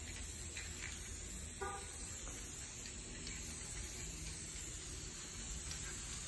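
Aerosol spray paint can spraying paint onto the painting in a steady hiss.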